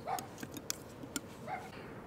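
Quiet pause with a few light clicks of a paintbrush working on an oil-paint palette, and two short faint sounds about a second and a half apart.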